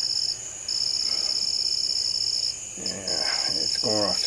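Night insects trilling in a steady, high-pitched chorus that breaks off twice for a moment, with a faint voice murmuring about three seconds in.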